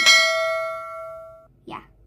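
A single bright bell-like chime, struck once, ringing and fading before cutting off abruptly about a second and a half in: an added 'ding' sound effect for a subscribe-button animation.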